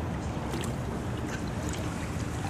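Pool water splashing and lapping as a man swims, with a few light splashes over a steady low rumble.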